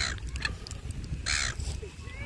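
Silver gulls squawking: two short, harsh calls, one at the very start and one about a second and a half in.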